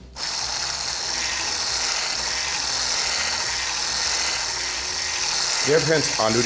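Electric hand blender with a whisk attachment switched on and running steadily in a beaker of liquid, starting abruptly right at the beginning.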